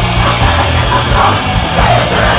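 Punk rock band playing live and loud: distorted guitars, bass and pounding drums with shouted vocals.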